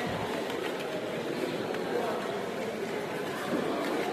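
Steady, indistinct hubbub of many voices in a large hall full of people.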